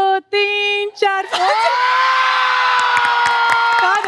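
A woman singing a few short notes, then holding one long steady note from about a second in, with the studio audience cheering behind.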